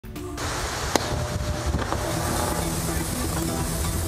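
Storm wind and driving rain, a loud steady rushing hiss buffeting the microphone, with low sustained music tones underneath and a single sharp click about a second in.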